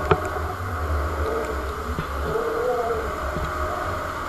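Wind buffeting an action camera's microphone while being towed aloft on a parasail, a steady, fluttering rumble with one sharp click about a tenth of a second in.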